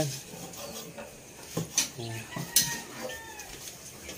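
A few sharp knocks of a knife striking a wooden chopping board as raw pork is cut, with faint voices in the background.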